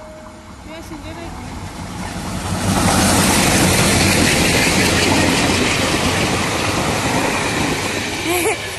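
Diesel locomotive-hauled passenger train running through the station at speed. It grows louder over the first three seconds as it approaches, then the engine and the wheels and coaches rattling past the platform make a loud, steady rush with a low hum underneath.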